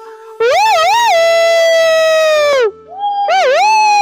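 A man's loud, high-pitched vocal call, hand at his mouth. It is a wavering 'hoo-oo' that settles into a long held note sinking slowly for about two seconds, then a shorter second call that dips, holds and falls away.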